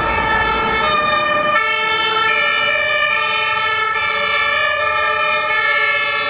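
German fire engine's two-tone siren sounding loudly, its pitch stepping back and forth between two notes as the truck drives past.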